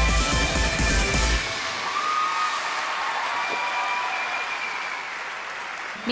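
An upbeat dance song with a heavy bass beat ends about one and a half seconds in, giving way to studio-audience applause that slowly fades.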